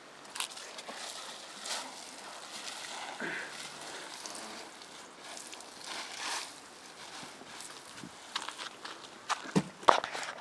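Soapy water poured from a watering can onto dry leaf litter and soil, a steady splashing hiss that swells now and then, with dry leaves and twigs rustling and crackling. Sharper crackles and knocks come near the end.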